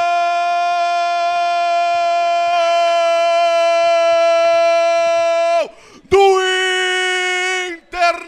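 A football radio narrator's long goal cry ("Gooool") held on one steady pitch for several seconds, falling and breaking off about five and a half seconds in, then a second, shorter held cry after a brief gap.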